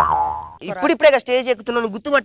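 A comic sound effect, a short tone falling in pitch that dies away within half a second, followed by a man talking.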